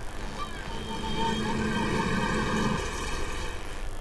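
Road traffic, with a motor vehicle's engine running steadily close by and dying away about three seconds in.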